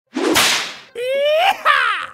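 Intro sound effect: a sharp whip-like rush of noise, then a pitched cry that rises and then falls away.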